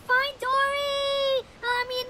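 A high-pitched, child-like voice speaking in short syllables, then holding one long sung note for nearly a second about half a second in, before going on in short syllables.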